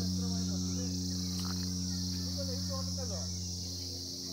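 A steady high-pitched insect chorus chirring through the orchard, over a steady low hum, with faint distant voices.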